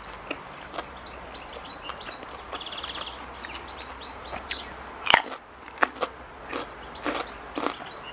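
Close-up eating sounds: a sharp crisp bite into a raw red radish about five seconds in, then a few more crunches as it is chewed. Small birds chirp and trill in the background during the first half.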